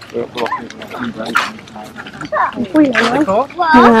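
Voices of people talking as they walk, with a louder drawn-out voice near the end.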